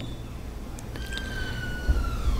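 A siren: one tone comes in about halfway through and slides slowly downward in pitch.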